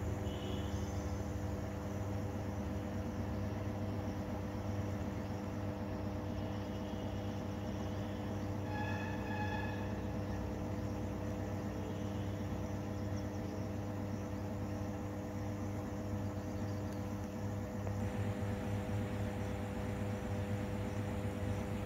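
Steady low electrical hum of high-voltage substation equipment, a drone with evenly spaced overtones typical of a power transformer on a 50 Hz grid. A few brief high-pitched calls sound over it, the clearest about nine seconds in.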